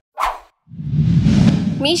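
A short blip, then a whoosh that swells for about a second: an editing transition sound effect. A woman's voice starts right at the end.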